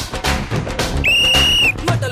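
A single short, steady whistle blast about a second in: a referee's whistle marking a point scored in a kabaddi raid. Background music with a steady beat runs throughout.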